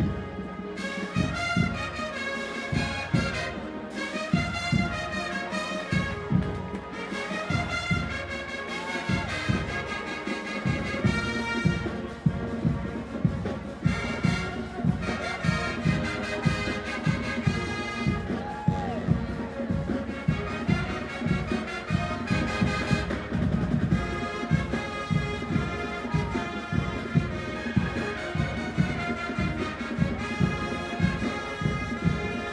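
Brass band music with a steady drum beat.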